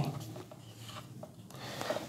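Faint rubbing of a marker pen writing on a whiteboard.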